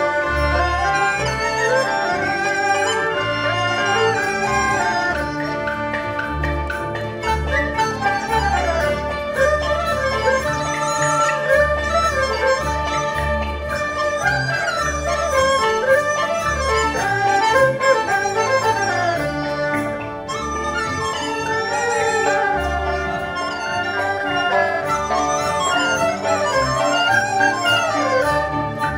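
Chinese traditional orchestra playing live: a melody with sliding pitches carried by bowed strings over a pulsing low bass line.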